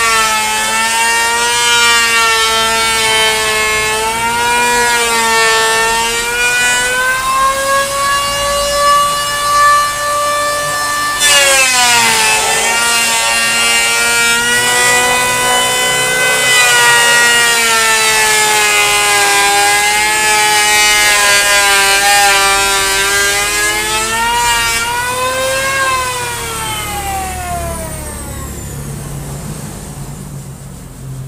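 Electric hand planer running as it shaves down a wooden plank: a high motor whine whose pitch sags and recovers as the blades bite into the wood. About eleven seconds in the pitch dips sharply and comes back. A few seconds before the end the whine falls steadily in pitch and fades as the planer spins down.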